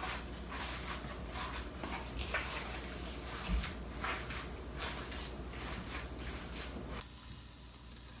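Hands kneading and squeezing raw ground venison mixed with seasonings in a plastic bowl: an irregular run of wet squishing and slapping. About seven seconds in it gives way to a quieter, even hiss.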